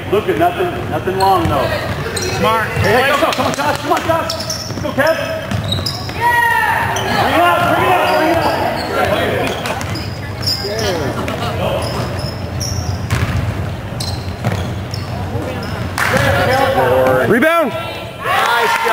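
Basketball bouncing on a hardwood gym court during play, with players' and spectators' voices in the hall.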